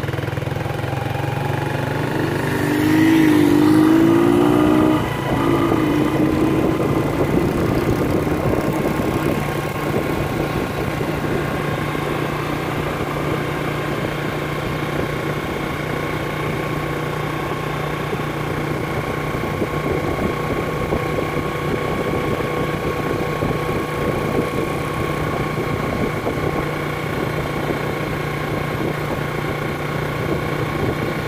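Motorcycle engine running steadily at an even cruising speed, heard from on the bike as it rides along the beach, with a brief wavering tone and a louder stretch about three seconds in.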